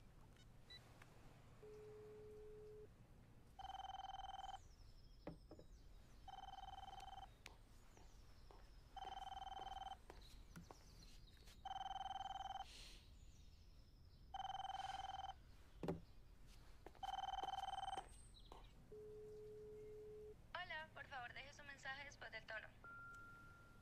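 Mobile phone ringing: six electronic rings about a second long, spaced a little under three seconds apart, with a short low beep before the first ring and another after the last, then a brief warbling electronic sound near the end.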